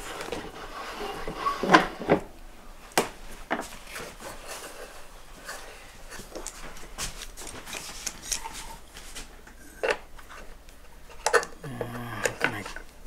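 Scattered knocks and clatter of wood and tools being handled on a workbench, the sharpest about two seconds in and again near the end.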